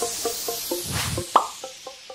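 Short animated-logo intro jingle: a whoosh that fades, then a quick run of short, evenly spaced notes, about four a second, with one brighter, higher note about halfway through.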